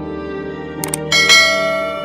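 A quick double mouse click just before a second in, then a bright bell-like notification ding that rings out and fades: the sound effects of a subscribe-button animation, over soft background music.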